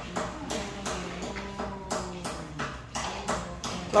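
Scattered light taps and clicks of dishes and spoons on a table, irregular and spaced unevenly, with faint voices in the background.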